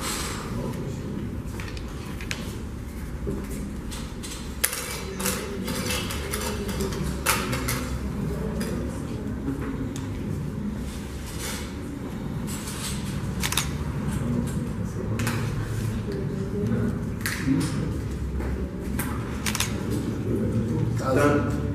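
Hollow plastic draw balls being handled and twisted open, giving scattered sharp clicks and knocks over a steady low room hum.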